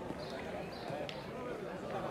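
Background chatter of several people talking at a distance, with two faint sharp clicks of metal petanque boules knocking, about a second apart.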